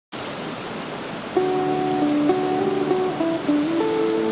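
Gentle background music of plucked guitar notes, which starts about a second and a half in, over a steady rush of running water.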